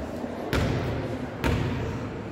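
A basketball bounced twice on a hardwood gym floor, two sharp thuds about a second apart: a free-throw shooter's dribbles before the shot.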